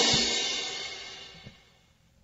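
The end of a 1964 surf-rock record: the band's last chord and cymbals die away steadily, gone about a second and a half in.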